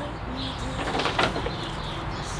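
A dove cooing a few low coos, with light rustling of paper shopping bags being handled.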